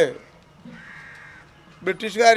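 A group of children's voices reciting in unison on one level note breaks off at the start and begins again near the end. In the pause between, a faint raspy bird call sounds.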